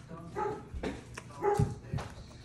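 A dog barking: two short barks about a second apart, the second louder.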